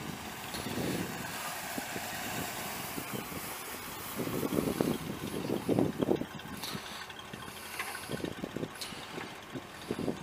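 The 1986 GMC C3500's 5.7-litre V8 gas engine running at idle, with an uneven low rumble that is loudest about four to six seconds in.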